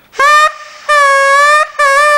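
A party horn noisemaker blown three times: a short toot, a longer one, then a third whose pitch drops as it dies out.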